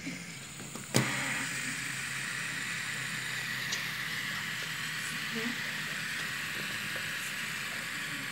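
Two fidget spinners spinning on a carpet, making a steady, even whir. A sharp click about a second in, as the second spinner is set going.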